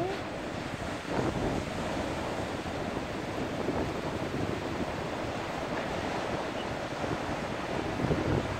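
Ocean surf washing and breaking over a rock shelf, a steady rushing wash with no distinct crashes, with wind buffeting the microphone.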